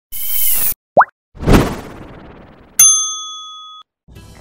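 Channel logo intro made of sound effects: a short whoosh, a quick rising pop about a second in, a heavy hit with a fading tail, then a bright chime that rings out and fades near the end.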